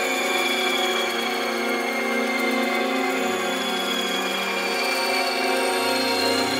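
Instrumental minimal doom-metal drone on fuzz-distorted electric guitar: layered, held notes with slowly gliding high overtones and no drums. A lower note comes in about halfway through.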